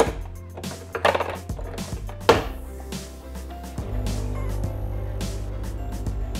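An Uno capsule espresso machine being loaded: a rustle and knocks, then a loud clack about two seconds in as the capsule is shut in. About four seconds in, the machine's pump starts a steady low buzz as it begins brewing the coffee.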